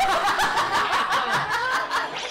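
A man and a woman laughing hard together: loud, high-pitched laughter in rapid, breathy ha-ha pulses.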